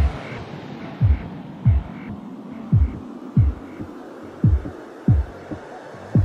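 Dubstep mix in a stripped-down passage: deep bass thumps, each dropping in pitch, hit in a syncopated pattern roughly every half second to second, while the rest of the track is filtered down to a faint, dull background.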